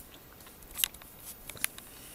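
Plastic model-kit sprue being handled, giving a few light clicks and crackles. The two clearest come a little under a second in and about a second and a half in.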